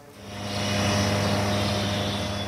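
Steady roar with a low hum from a burning gas flare stack. It fades in over the first half-second and eases slightly near the end.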